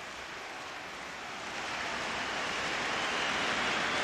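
A swell of hiss-like noise without any tone or beat, rising steadily in loudness, at the start of a rap track just before the beat comes in.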